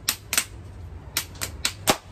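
Hands slapping: fists pounded into open palms in a rock-paper-scissors count, two sharp slaps at the start and four more from about a second in.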